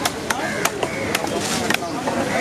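Large fish-cutting knife chopping through tuna onto a wooden log chopping block: about five sharp chops at uneven intervals, with voices in the background.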